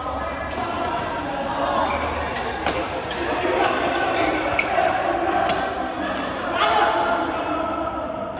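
Badminton doubles rally: a shuttlecock struck back and forth with rackets, sharp hits about once a second, with players' voices.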